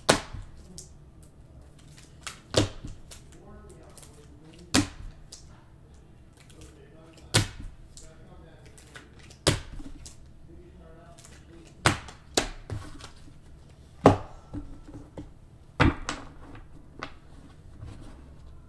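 Trading cards being laid down one by one onto a pile on a table: a sharp slap about every two seconds, nine in all.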